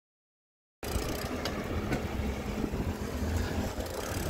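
Dead silence for the first second, a dropout in the recording, then steady street traffic noise cuts in, with the low rumble of a car driving close by.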